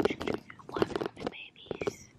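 Close handling noise on the camera's microphone: scratchy rubbing and a quick run of small taps and clicks as the lens is wiped clean with a hand and cloth.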